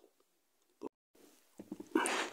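Near silence, broken by one short click a little before the middle; near the end, faint lip and mouth clicks lead into the next words.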